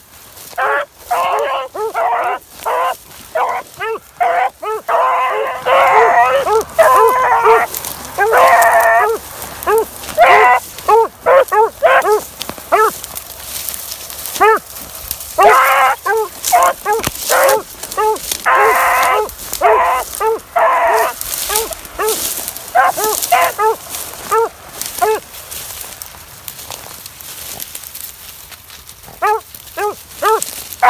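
A brace of beagles baying in full cry on a trail. There is a rapid run of short chop barks mixed with longer drawn-out bawls, the two voices overlapping in dense bursts, and it thins out for a few seconds near the end.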